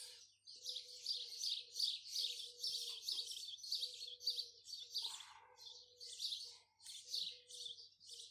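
Birds chirping rapidly and continuously, with a lower steady note repeating in short stretches underneath.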